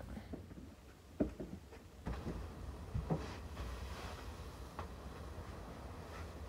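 Faint handling and movement noise: a few light knocks and rustles as a person moves and settles into a wooden chair, over a low steady rumble.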